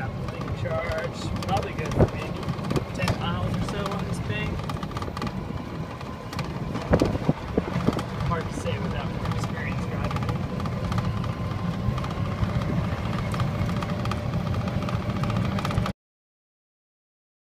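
Small battery-electric vehicle (GEM-type, six 12-volt batteries) driving slowly over an unpaved road, heard from inside the cabin: a steady low rumble of tyres and road with a faint steady high tone, and a few knocks and rattles over bumps, the sharpest about 2 seconds and 7 seconds in.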